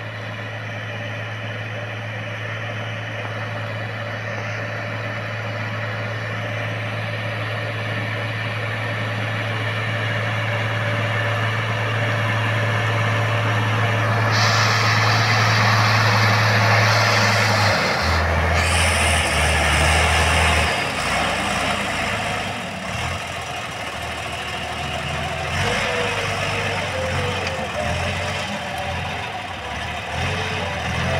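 Torpedo tractor's diesel engine working under load as it pulls a plough through stubble. It grows louder as it approaches, with a steady drone that shifts in pitch about 18 seconds in.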